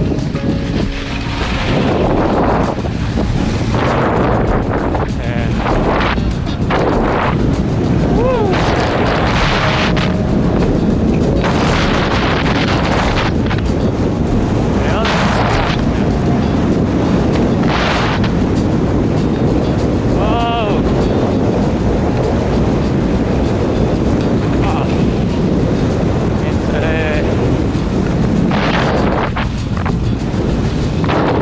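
Wind buffeting a moving action camera's microphone in steady, heavy gusts while skis run over snow under kite power. A few short whistling tones rise out of it.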